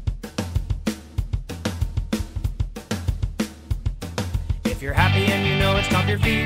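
Instrumental music led by a drum kit playing a steady beat of kick, snare and cymbals over a bass line, with more pitched instruments joining about five seconds in.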